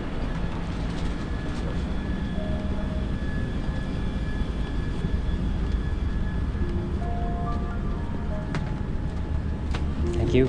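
Steady low hum of an airliner cabin's air-conditioning and ventilation while the aircraft is parked at the gate for boarding. Soft music with slow held notes plays quietly over it.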